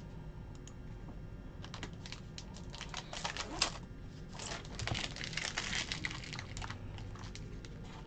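A Topps Heritage baseball card pack wrapper crinkling and crackling as it is torn open by hand. The crinkling comes in quick bursts, loudest about three and a half seconds in and again from about four and a half to six and a half seconds.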